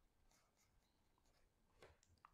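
Near silence, with faint scratching of a pen writing on paper.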